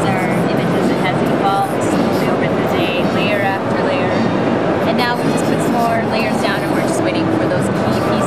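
Crowd chatter in a busy exhibition hall: a steady din of many voices talking at once, none standing out.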